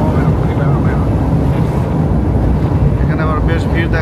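Steady low rumble of engine and tyre noise heard from inside a car cruising on a paved highway. A voice speaks briefly near the end.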